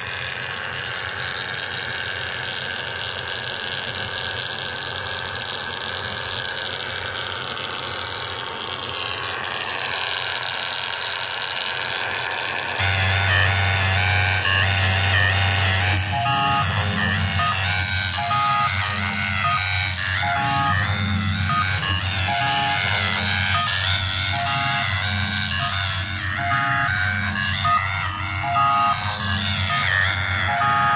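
Electronic music played on Korg Volca synthesizers. Sustained, slowly shifting synth tones come first; a little before halfway a deep bass note enters, and soon after a repeating sequenced pattern of short notes starts.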